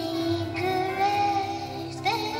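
A child singing a slow melody with long held notes over instrumental backing music, amplified through a microphone.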